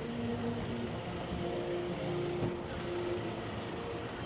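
Outdoor street ambience: a steady vehicle hum with held, shifting tones of faint music or voices over it.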